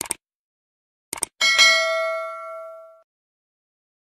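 Sound effects of a subscribe-button animation: a single mouse click at the start, a quick double click about a second in, then a notification bell ding that rings and fades out over about a second and a half.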